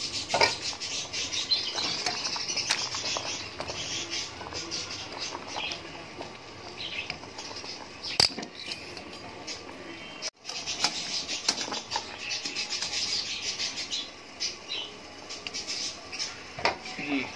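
Jaggery water at a rolling boil in a steel pot, bubbling steadily, with a few sharp clinks of metal tongs against the pot as potatoes are lifted out.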